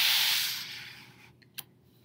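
Paper rustling as the pages of a picture book are handled and turned: a soft hiss that fades over about a second, then a single faint click.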